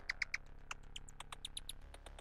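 Quiet electronic music fading out: a fast run of short synthesizer blips, about eight a second and jumping in pitch, over a low drone.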